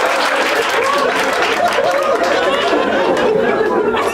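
Audience laughing and reacting, many voices at once in a steady wash.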